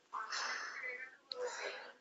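A person whispering: two short, quiet, breathy phrases with a brief pause between them.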